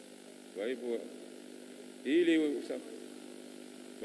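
Two short snatches of indistinct speech, the second louder, over a steady hum.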